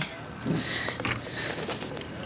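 Irregular splashing and rustling close by: a freshly netted sockeye salmon thrashing in a landing net against the side of a kayak.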